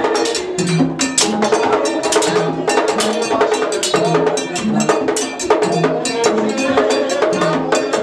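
Vodou ceremonial drumming: a metal bell struck in a fast, steady pattern over drums, with a deep drum beat landing about once a second.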